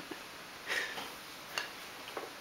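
Faint feeding sounds: a short breathy sniff from the baby about a third of the way in, then a sharp click of the plastic spoon against the plastic baby bowl as the next spoonful is scooped.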